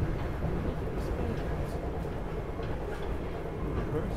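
SEPTA Regional Rail electric commuter railcar running at speed, heard from inside the passenger cabin: a steady low rumble of wheels on track with a few faint clicks.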